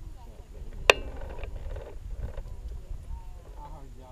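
Indistinct voices of people talking, over a low, uneven rumble of wind on the microphone, with one sharp click about a second in.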